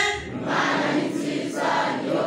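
Voices singing together in worship like a choir, a lead voice carried over a microphone.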